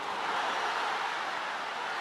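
Football stadium crowd, a steady roar of noise.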